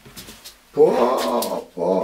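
A man's drawn-out exclamation of delight, "ohh", then a second shorter "oh" near the end. Before it come a few faint light clicks as a metal ring mould is lifted off.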